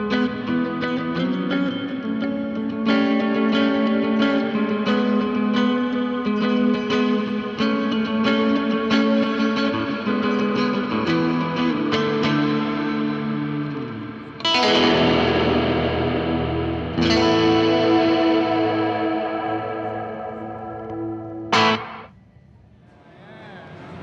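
Fender Telecaster electric guitar played through Chase Bliss Automatone effects pedals. Picked single notes and chords for about fourteen seconds, then two big strummed chords, each left to ring out and fade, and a short sharp strum near the end.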